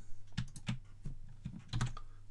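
Several sharp clicks of computer keys and buttons in two quick clusters: three or four about half a second in, then another three or four near the end.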